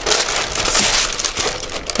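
A sheet of tracing paper crinkling and rustling as it is pressed and shaped against a van's side window to make a template, fading a little near the end.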